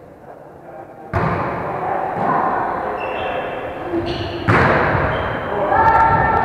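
Sharp thuds of a volleyball being hit, about a second in and again past four seconds, echoing through a large gym hall, with players' voices between them.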